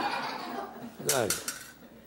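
Metal spoon scraping and stirring chopped vegetables in a metal skillet, fading out over the first second, followed by a short chuckle from the cook.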